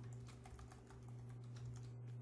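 Typing on a computer keyboard: a quick, faint run of keystrokes over a steady low hum.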